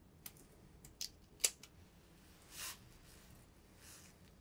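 Faint small clicks and ticks from hands handling fly-tying materials and tools at the vise, with one sharper click about one and a half seconds in and a brief soft rustle a second later.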